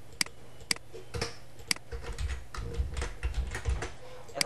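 Computer keyboard keys clicking: four sharp clicks about half a second apart, then lighter, quicker tapping.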